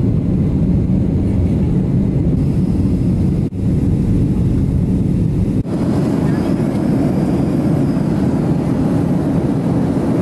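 Steady low noise of a jet airliner's engines and airflow heard inside the passenger cabin. It drops out briefly twice, about three and a half and five and a half seconds in, and resumes each time.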